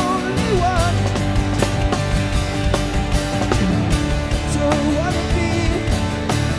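Live rock band playing an instrumental passage: drum kit keeping a steady beat under electric and acoustic guitars, with a wavering lead melody line over the top.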